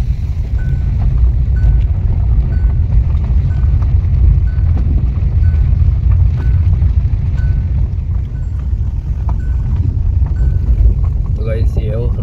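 Steady low rumble of a car's tyres and suspension on a rough dirt and gravel track, heard from inside the Hyundai Creta's cabin, with some wind noise. A faint high beep repeats about every two-thirds of a second.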